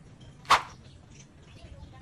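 Pliers working a copper wire joint: one short, sharp snap about half a second in, over a faint low hum.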